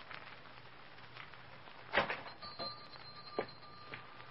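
Radio-drama sound effect of a shop door being opened as someone comes in: a sharp latch click about halfway through, then a thin, steady, high ringing of a door bell lasting about a second and a half, broken by a lighter click.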